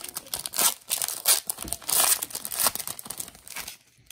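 Foil Pokémon booster pack wrapper crinkling and tearing as it is pulled open by hand: a dense run of sharp crackles that stops shortly before the end.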